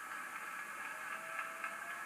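Steady hiss-like background noise of a television broadcast, played through the TV's speaker and picked up in the room.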